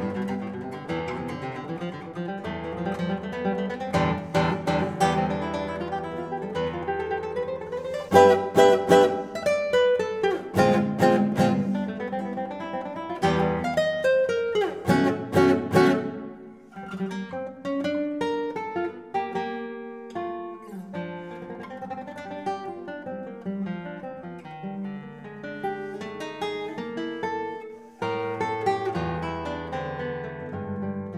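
Solo nylon-string classical guitar playing a lively contemporary piece. Loud, sharply struck chords and fast runs fill the first half; about halfway through it drops to a quieter, sparser melodic line, and a new, fuller phrase begins near the end.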